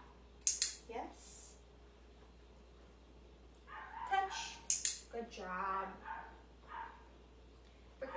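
A woman's voice in short, quiet bursts with pauses between, too soft for the words to be made out.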